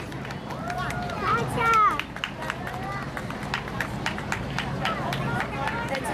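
Children's high voices calling out and chattering, loudest about one to two seconds in, over scattered short sharp knocks and a steady low hum.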